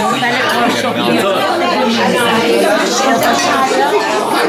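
Several people talking at once: overlapping conversational chatter.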